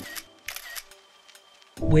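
Two camera-shutter clicks in the first second as held music fades out, then a short quiet stretch before a man starts speaking near the end.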